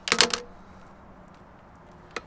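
A quick run of sharp metallic clicks right at the start from a wire cutter/stripper tool and the wire being worked, then only faint handling of the wires.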